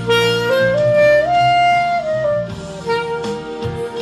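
Instrumental music: a wind instrument plays the melody over a lower accompaniment, climbing in steps to a held high note around the middle, then stepping back down to settle on a long held note for the last second or so.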